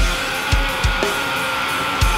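Heavy metal band playing: electric guitar over drums, with three hard low drum hits, one at the start, one about half a second in and one just after.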